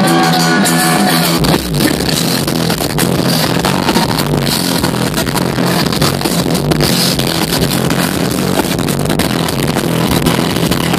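Loud live concert music through a festival sound system, recorded from the crowd on a phone. A deep bass comes in about a second and a half in and the dense mix carries on steadily.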